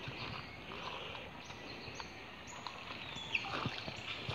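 Steady riverside forest ambience: a high, even hiss with a few short high chirps and a falling bird-like call about three seconds in. A wading step sloshes in the shallow water near the end.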